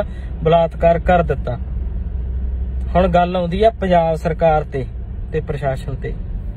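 Steady low rumble of a car heard from inside the cabin, running under a man's speech and filling the pauses between his phrases.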